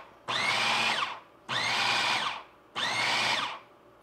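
Food processor with a metal blade pulsing an egg and cheese batter: three short runs of the motor, each under a second and about a second and a quarter apart, the whine rising as the blade spins up and dropping as it stops.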